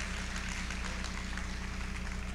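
A steady low hum made of several held low tones, with a faint even hiss above it.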